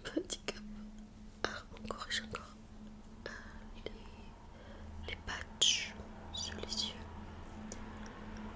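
Stone facial roller rolling over the skin close to the microphone: scattered small clicks and short soft hissing, brushing sounds, the loudest about five and a half seconds in.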